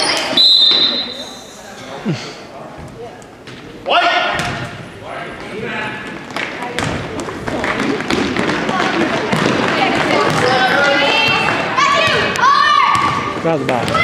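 A referee's whistle gives one steady, high blast about a second long just after the start. After it comes a basketball being dribbled on a hardwood court, with repeated short thuds, under spectators' voices.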